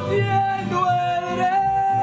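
Mariachi music: a male singer holds one long high note, starting just after the beginning, over guitar accompaniment.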